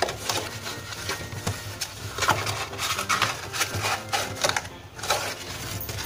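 Thin cereal-box cardboard being handled and bent by hand: irregular crinkles, taps and rubbing as the flap is rolled and pressed into place.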